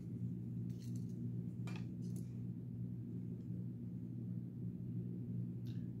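A few faint clicks and light metal taps as a folding knife and a digital caliper are handled, with the caliper set on the blade to measure its thickness. A steady low hum runs underneath.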